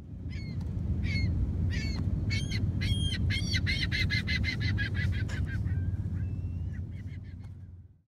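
Birds giving a series of honking calls over a steady low rumble. The calls are spaced out at first, then run quickly at about five a second through the middle, and end with a longer wavering call.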